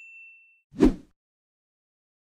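Subscribe-button animation sound effects: a bright bell-like ding rings out and fades, then a short, deep thump or pop comes just under a second in.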